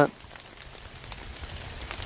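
Steady rain patter, a soft hiss of many small drops, with a low rumble underneath that grows slightly louder toward the end.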